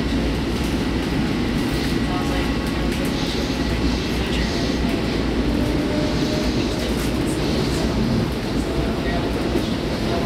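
Interior of a Long Island Rail Road commuter train running at speed: a steady rumble of wheels on rail and car noise, with faint passenger voices over it.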